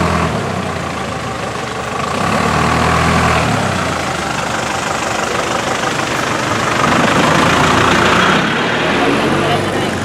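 Engine of an Isuzu Elf light truck running, a diesel, with a steady low rumble that swells louder twice.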